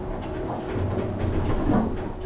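Automatic sliding doors of a 2000 Thyssen passenger lift closing, the door operator motor humming steadily as the stainless-steel panels slide shut.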